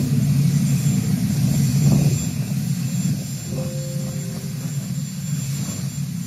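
Steady jet-aircraft noise on an airport tarmac, a low rumble with a thin high whine above it, from a parked jet airliner (Air Force One).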